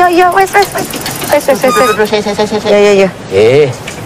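People talking loudly, the voices rising and falling in pitch.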